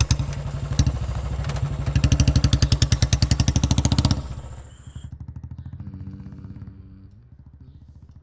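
Royal Enfield single-cylinder motorcycle running and pulling away, its engine beating in a quick, even thump. It is loudest between about two and four seconds in, then drops sharply and fades away.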